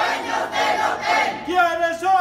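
A crowd of protesters shouting a slogan together, followed near the end by one man's loud, drawn-out shout leading the next call of the chant.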